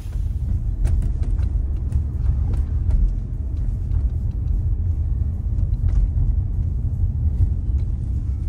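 Car driving along a street heard from inside the cabin: a steady low rumble of engine and road noise, with a few faint clicks.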